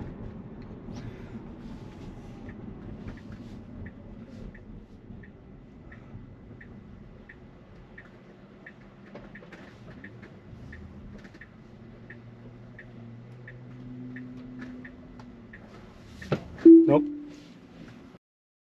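Car turn-signal indicator ticking in the cabin of a Tesla Model Y, about one and a half ticks a second for some ten seconds over a low cabin hum. Near the end there is a short loud knocking burst with a brief tone.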